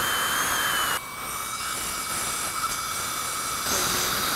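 High-speed dental air-turbine handpiece running on a front tooth: a thin high whine over a steady hiss of air and water spray. About a second in it drops to a slightly quieter hiss with a lower steady tone.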